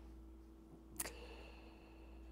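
Near silence with a faint steady hum, broken by a single short click about halfway through.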